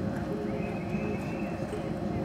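Hoofbeats of a horse loping on soft arena dirt. A steady high-pitched tone runs for just over a second through the middle.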